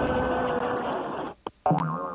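A held pitched tone fades out, then after a short gap and a click a cartoon boing sound effect drops in pitch and wobbles as it rings on.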